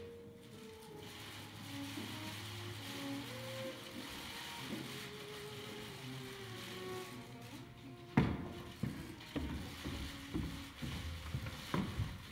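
Faint background music over hall ambience. About eight seconds in comes a sudden sharp click, followed by a run of irregular clicks and knocks.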